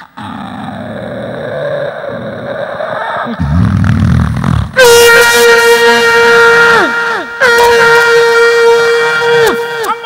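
A man imitating a vehicle with his voice into a microphone: a noisy build-up and a low rumble, then two long air-horn blasts, each held about two seconds and bending down in pitch as it ends.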